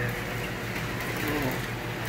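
A steady low mechanical hum with no change in pitch or level, with a light room hiss over it.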